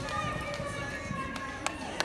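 Horse galloping on arena dirt, its hoofbeats thudding under raised, drawn-out human voices, with a sharp click about one and a half seconds in.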